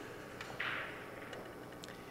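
Quiet background of a pool tournament hall, with a soft brief hiss about half a second in and a few faint small clicks.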